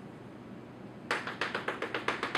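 Chalk tapping against a chalkboard in a quick run of short, sharp taps, several a second, starting about a second in, as a dashed line is drawn stroke by stroke.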